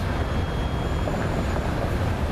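Steady low rumble of outdoor street noise, with wind buffeting the microphone.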